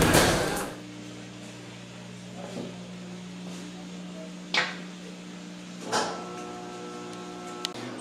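Punches landing on a heavy bag for the first moment, then a steady low hum with two sharp clinks, about four and a half and six seconds in, as a metal fork is set down by a plate on a table.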